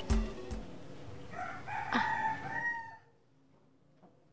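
A rooster crowing once, a pitched call of about a second and a half that cuts off suddenly about three seconds in.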